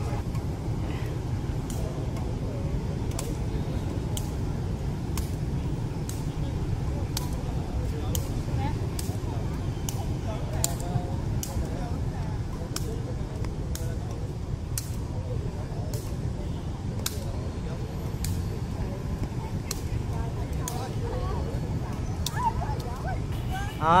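Steady rumble of city street traffic, cars and motorbikes, with faint distant voices. A row of faint sharp ticks comes about every 0.7 seconds.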